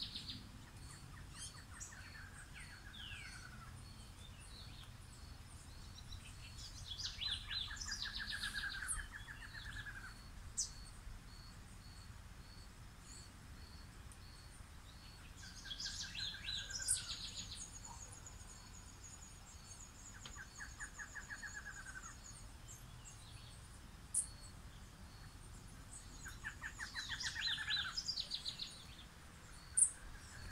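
Wild birds singing: one repeats a short phrase of rapid, falling notes every several seconds, among scattered higher chirps. A faint high note pulses steadily underneath.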